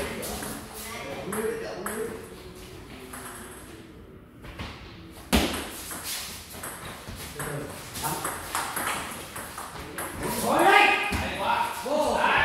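Celluloid-type table tennis ball struck by paddles and bouncing on the table during a doubles rally: a run of sharp clicks, the loudest about five seconds in. People's voices come in near the end.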